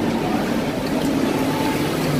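Steady background noise of a busy restaurant dining room: an even rumble with a few faint held tones under it.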